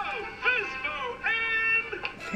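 A high-pitched voice singing a short playful phrase of a few gliding notes, ending on one held note.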